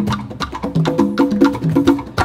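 Afro-Cuban rumba percussion played live: hand drums in a repeating pattern of short pitched tones, under fast, sharp wooden clicks.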